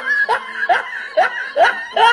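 A person laughing in short, repeated bursts, about two a second, each rising in pitch: a snickering laugh played over the closing card.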